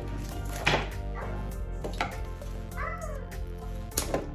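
Scissors snipping through rose stems, two sharp cuts about a second apart, over steady background music.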